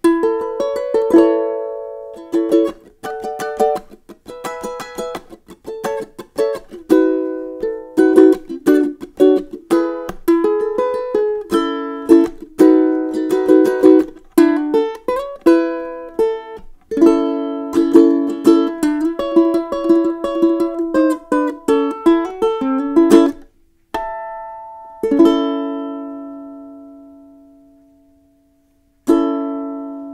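Kanile'a KPA C/PG concert ukulele, with a solid Hawaiian koa body and fluorocarbon strings, played solo in a busy run of strummed and fingerpicked chords and melody. Near the end the playing slows to a few single chords left to ring out, the last struck just before the end.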